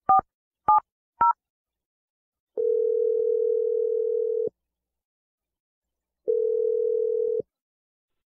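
Telephone touch-tone keypad beeps as the last three digits are dialed, then the ringback tone of an outgoing call ringing twice. The second ring is shorter.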